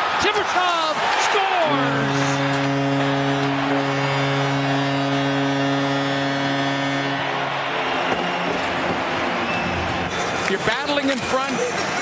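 Hockey arena goal horn sounding one long steady blast of about six seconds, signalling a home-team goal, with crowd noise carrying on after it stops.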